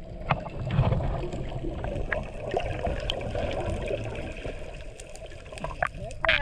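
Muffled underwater sound picked up by an action camera below the surface: a steady low rumble of water with scattered small clicks.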